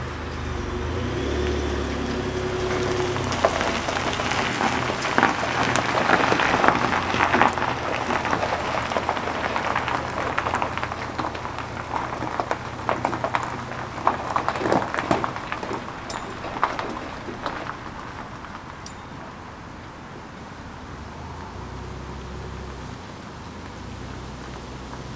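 Pickup truck towing a tandem-axle dump trailer rolling slowly past on a gravel driveway, its tyres crunching and crackling over the stones. A low engine hum opens it, the crunching is loudest in the first half, and it fades away after about 18 seconds.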